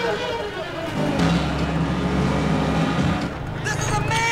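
Street ambience with a motor vehicle engine humming low and steady, and a voice rising and falling near the end.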